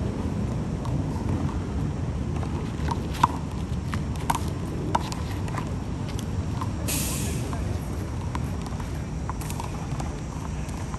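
Small rubber handball struck by open hands and bouncing off a concrete wall and court: a run of sharp slaps, roughly one or two a second, the loudest about three seconds in, over a steady low rumble. A short hiss breaks in about seven seconds in.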